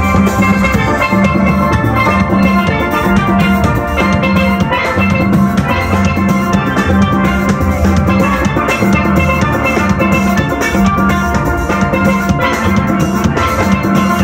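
A steel band playing live: many steelpans ring out melody and chords over a drum beat, steady and loud throughout.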